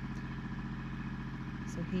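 Kubota L2501 tractor's three-cylinder diesel engine running steadily as it drags a rake up a gravel driveway. A woman's voice starts near the end.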